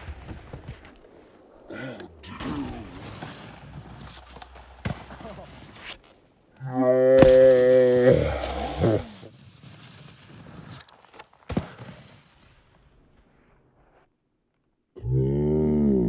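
Wordless yells from people: one long held holler about six to eight seconds in, and a shorter one that rises and falls in pitch near the end, with quieter stretches of scattered small knocks between them.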